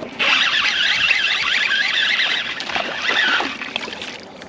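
Fishing reel being cranked fast, a loud, wavering whirr of its gears that stops shortly before the end, as a small hooked bass is reeled to the surface.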